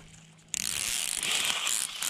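Red backing liner being peeled off double-sided adhesive mounting tape, a steady rasping rip that starts about half a second in.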